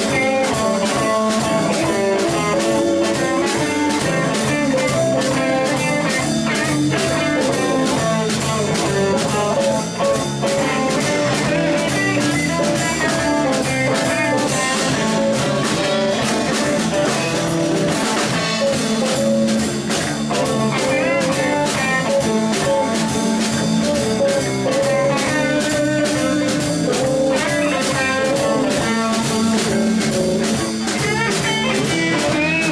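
Live band playing a blues-rock instrumental: electric guitars over a drum kit keeping a steady beat.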